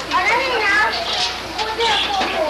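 Several children's voices chattering and calling out over one another in excited play.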